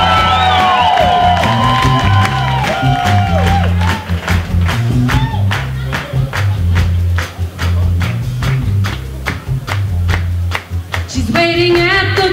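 A live rockabilly band plays an instrumental stretch over a steady bass line and an even drum beat, with held melody notes that bend in the first few seconds. A woman's singing voice comes in near the end.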